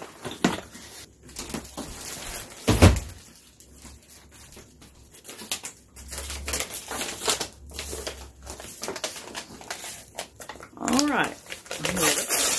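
Plastic wrapping crinkling and rustling as plastic-wrapped parts of a rolling storage cart are handled, with one louder knock about three seconds in.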